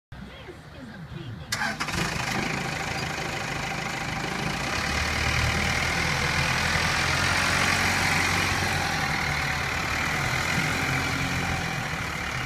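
Diesel engine of a Hyster H80FT forklift starting: a short crank, then it catches about a second and a half in and runs steadily. It grows louder for a few seconds mid-way as the forklift drives off.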